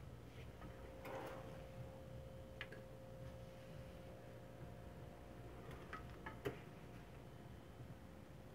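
Quiet room tone with a faint steady hum and a few scattered light clicks, the loudest about six and a half seconds in.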